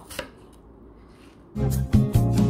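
A kitchen knife cutting through an apple on a plastic cutting board, a short chop just at the start. About one and a half seconds in, background music comes in and is the loudest sound to the end.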